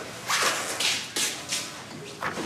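Footsteps on a hard floor: a few short scuffing steps at an uneven pace.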